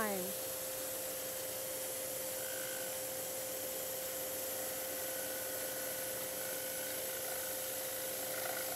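Scroll saw running steadily with a fine number 7 blade cutting slowly around a curve in a thin wooden blank, a constant motor hum under the even buzz of the reciprocating blade.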